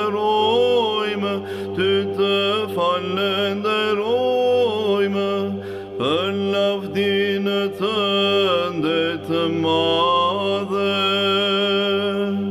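Orthodox church chant in Byzantine style: a voice sings a slow, ornamented melody with long gliding notes over a steady low held drone (ison).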